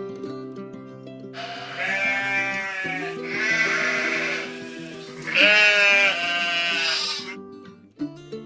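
A sheep bleating three times, each call a second or two long with a trembling, wavering pitch; the last call is the loudest. Acoustic guitar music plays underneath.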